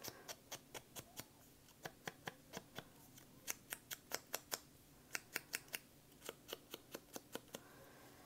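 Ink blending tool's foam pad dabbed against the edges of a paper cutout to ink them: a run of light, sharp taps, about four or five a second, in short bursts with brief pauses.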